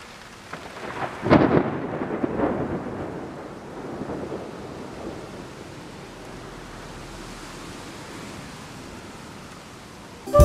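Thunder over steady rain: a rumbling roll builds to a peak about a second in and fades over the next few seconds, leaving an even hiss of rain.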